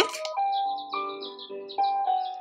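Dekala sunrise alarm clock playing its third built-in wake-up sound: soft music of slow, held notes that change a few times, with bird chirps over it.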